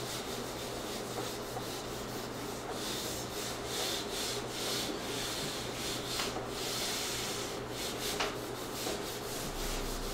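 Handheld whiteboard eraser rubbing across a whiteboard in repeated back-and-forth strokes, wiping off marker writing.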